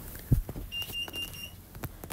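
An electronic beeper gives a quick run of short high beeps, about four in under a second, starting nearly a second in. A single knock sounds just before.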